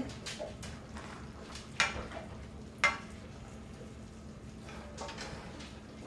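Wooden spoon stirring shredded chicken in a cast iron skillet, with a few light knocks of the spoon against the pan, the two loudest about two and three seconds in.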